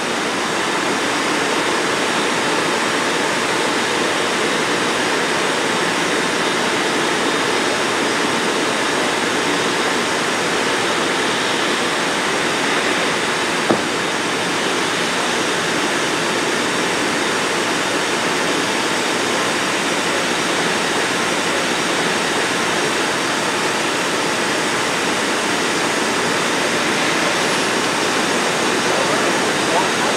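Steady, even rushing noise with no rise or fall, broken by a single short click about 14 seconds in.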